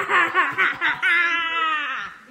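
A child laughing in quick bursts, then, about a second in, one long high-pitched scream that falls slightly in pitch.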